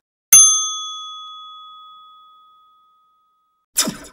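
Bell-like 'ding' sound effect of a YouTube subscribe-and-bell animation, struck once and ringing out in a clear high tone that fades over about three seconds. A brief noisy burst comes near the end.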